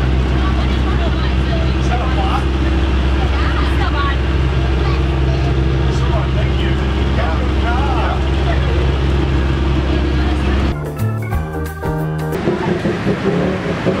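Steady low engine drone heard from inside a crowded passenger vehicle, with people talking over it. The drone cuts off suddenly about eleven seconds in.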